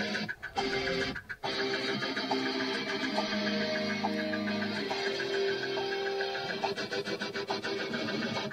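Playback of an electric guitar take, a rhythm guitar part with held chords, picked up in a small room. The sound breaks off briefly twice near the start.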